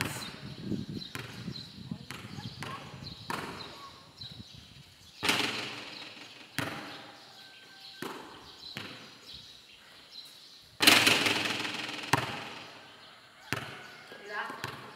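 Basketball bouncing on a concrete court under a metal roof: a string of separate, echoing impacts about one to one and a half seconds apart. The loudest comes about eleven seconds in and rings out for over a second.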